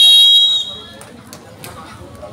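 Referee's whistle blown once in a single shrill, steady blast that stops about half a second in, the signal for play to start; faint crowd noise follows.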